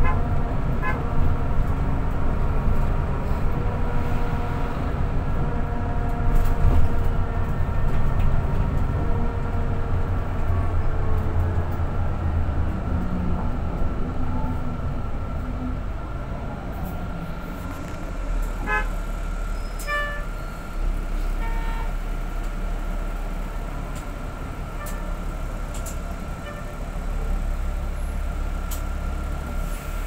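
Engine and road noise inside a moving bus: a steady low rumble with a thin constant whine above it. The low part of the sound changes about two-thirds of the way through.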